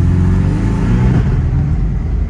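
Porsche Boxster's engine pulling under acceleration, its note rising for about a second and then falling away.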